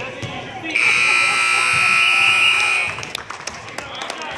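Gym scoreboard buzzer sounding one loud, steady blast about two seconds long, starting just under a second in and cutting off sharply.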